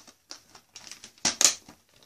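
A few irregular short clicks and taps, the loudest two close together about a second and a quarter in.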